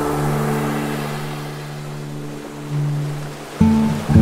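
Slow acoustic guitar music: a low chord rings on and slowly fades, with a fresh note near the middle and another just before the end. Beneath it runs the steady wash of ocean surf.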